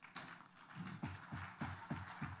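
Faint soft taps, several in quick irregular succession.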